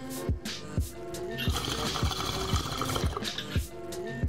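A hip-hop backing beat with regular kick-drum strokes throughout. For about two seconds in the middle it is joined by the water of a glass bong bubbling as a hit is drawn through it.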